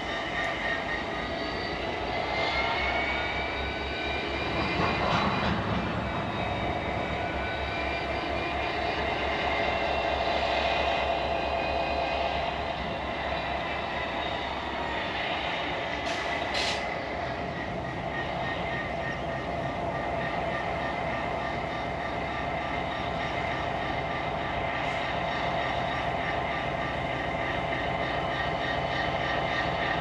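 Diesel locomotive hauling a train of ore wagons slowly past, a steady low rumble from the engine and rolling wheels with several high, slightly gliding whining tones over it.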